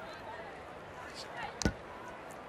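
Steady murmur of a rugby stadium crowd during a stoppage, with faint distant voices and one sharp thump about one and a half seconds in.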